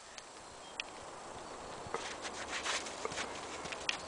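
Footsteps crunching in coarse, granular snow, starting about halfway through as a quick, irregular run of light crunches.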